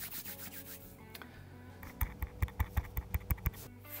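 Hands rubbing together close to a clip-on microphone. About halfway through comes a quick run of about ten brisk strokes lasting a second and a half.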